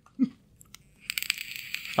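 A brief falling murmur, then from about halfway a second-long crinkling, crunching noise close to the microphone, like a bag or wrapper being handled or something crunchy being eaten.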